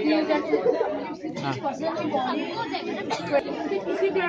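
Many people talking at once: a steady babble of overlapping voices, with no single voice clear enough to follow.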